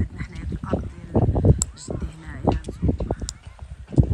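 Farm fowl, geese or ducks, giving a string of short calls, with a voice now and then.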